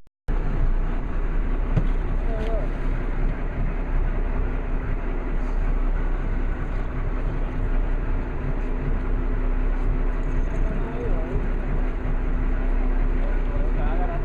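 Boat engine running steadily with a low hum, under wind and sea noise; it cuts in abruptly just after the start. Faint voices can be heard now and then.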